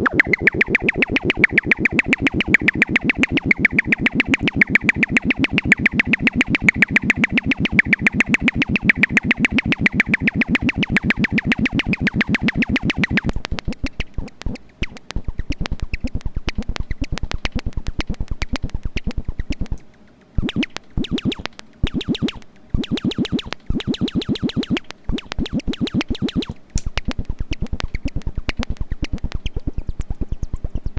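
MFOS Noise Toaster, a DIY analog noise synthesizer, sounding a fast, evenly repeating buzzy pulse while its knobs are being turned. About halfway through the sound thins abruptly into a sparser clicking pulse that cuts out several times in short gaps.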